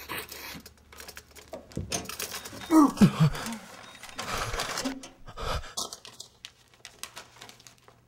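Clicking of an electronic hotel safe's push-button keypad as the code is entered, then the safe's door and contents being handled. A woman gives a short breathy vocal sound about three seconds in.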